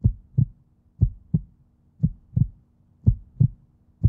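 Heartbeat sound effect: low double thumps, lub-dub, about one pair every second.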